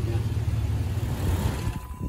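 Jeep Wrangler's 4.0-litre inline-six engine idling steadily, then shutting off near the end.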